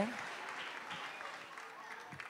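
Faint applause from an audience, slowly dying away.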